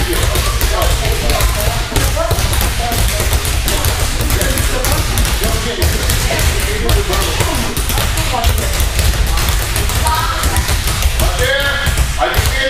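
Several balls being dribbled on judo mats at once, an irregular, overlapping run of dull thuds and taps, with voices over it.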